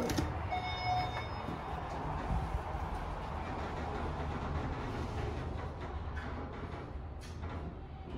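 Mid-American machine-room-less traction elevator: a brief tone sounds about half a second in as its glass sliding doors close, then the car runs downward with a steady low hum. A few clicks come near the end.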